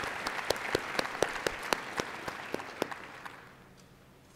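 Audience applauding, with single sharp claps standing out above it about four times a second. The applause dies away about three and a half seconds in.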